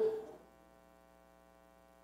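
A man's voice trails off, then a faint, steady electrical hum from the sound system in the pause.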